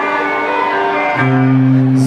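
Live electric guitar and band playing slow held notes, with a new lower note coming in and ringing on a little past the middle.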